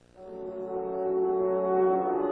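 A section of Vienna horns playing a sustained chord in close harmony. It enters softly after a moment of near silence and swells.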